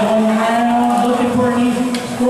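A long, low, drawn-out vocal sound, like a held shout or "ooh", lasting almost two seconds over the noise of the gym.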